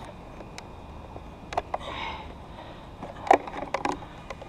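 Scattered clicks and light knocks of an RC car's plastic body shell being unclipped and lifted off its chassis, with a cluster of clicks near the end and a short soft breathy sound about halfway through.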